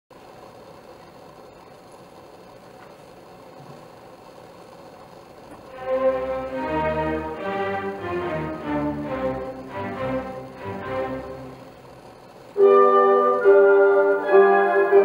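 Symphony orchestra playing classical music: very soft sustained tones at first, then a fuller string passage from about six seconds in that dies away, and near the end a sudden loud entry with the grand piano.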